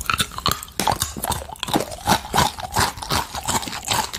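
Close-miked chewing of dark-chocolate-coated salted mini pretzels: a steady run of crisp, crackly crunches, about two or three to the second.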